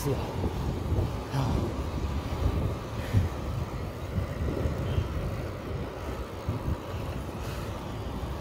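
Wind noise buffeting the microphone of a camera on a moving bicycle, with tyre and road noise underneath; steady throughout, with no distinct events.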